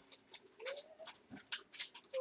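A household pet giving one short, rising whine about half a second in, with faint scattered clicks around it.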